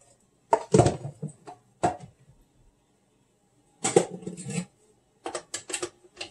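Stainless-steel juicer being assembled by hand: its metal mesh filter basket and lid are set in place with clusters of knocks, clicks and clatter of metal and plastic parts, about four bursts with pauses between.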